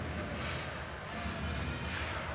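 Basketball being dribbled on a hardwood court over steady crowd noise in an indoor arena.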